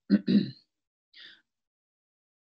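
A woman clearing her throat: two short rasps in the first half second.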